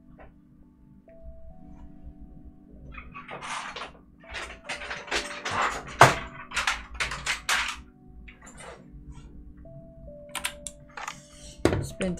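Mechanical keyboards being rummaged through and lifted from a pile: a run of plastic clattering and knocking, busiest from about three to eight seconds in, with one sharp knock near the middle. Soft background music plays throughout.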